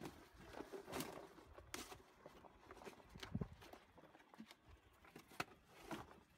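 Near silence, with a few faint, scattered knocks and rustles of sugar snap peas being tipped from a plastic bucket into cardboard produce boxes and the boxes being handled.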